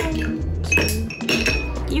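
Large ice cubes dropped into a glass mixing pitcher, clinking against the glass a few times, with a short glassy ring after the strikes.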